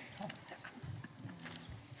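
Quiet room tone in a large meeting hall, with a few faint clicks and a brief, faint murmur of a voice about a second in.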